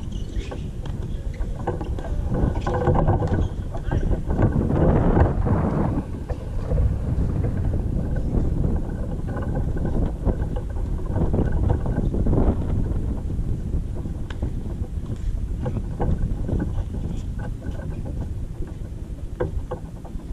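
Wind buffeting the microphone: a low rumble that swells in gusts, loudest about five seconds in and again around twelve seconds.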